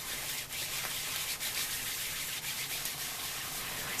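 Steady rubbing and scrubbing of a hand-held plastic agitator over wet wool felt: firm friction to felt the layers together.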